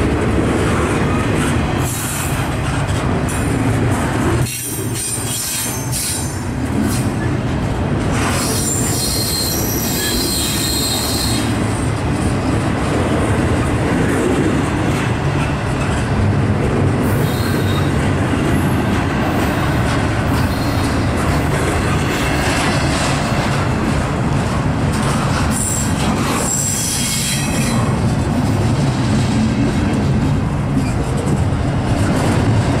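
Double-stack intermodal freight train's container well cars rolling past: a steady rumble and rattle of wheels on the rails, with stretches of high-pitched wheel squeal about eight seconds in and again near the end.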